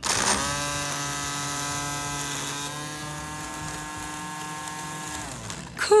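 Worx GT cordless string trimmer in edger mode, its electric motor running with a steady whine as it cuts the grass edge along a sidewalk. The pitch dips a little about halfway through, and the motor winds down and stops shortly before the end.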